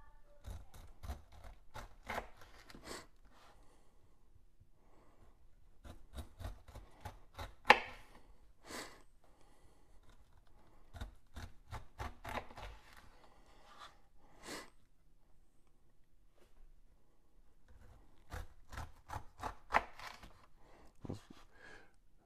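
Kitchen knife cutting the rind off a whole pineapple on a wooden cutting board: clusters of short cutting strokes separated by pauses, with one sharp knock about eight seconds in.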